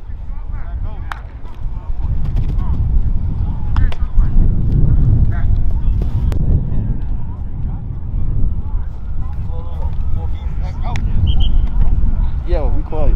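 Outdoor field ambience dominated by a loud, uneven low rumble of wind buffeting the microphone. Faint voices call out now and then, and a few sharp clicks sound in the middle of it.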